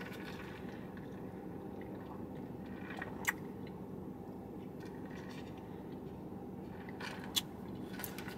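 Lemonade being sipped quietly through a straw from a foam cup, over a steady low hum, with two brief clicks: one about three seconds in and one near the end.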